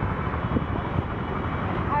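Steady street traffic noise, a low rumble with wind buffeting the microphone.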